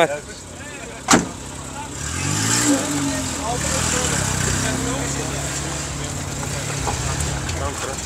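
A car engine rises in pitch about two seconds in, then runs steadily for about five seconds before dropping away near the end. A single sharp knock comes about a second in.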